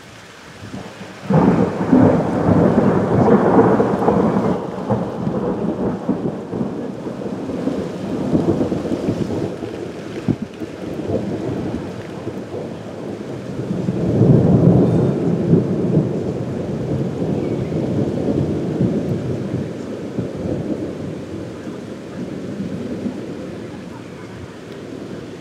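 Thunder rumbling in two long peals over falling rain. The first breaks suddenly about a second in and slowly dies away; the second swells up about fourteen seconds in.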